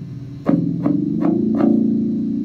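Electric bass guitar played solo: a note dies away, then four plucked notes follow about 0.4 s apart, starting half a second in, with the last one left to ring.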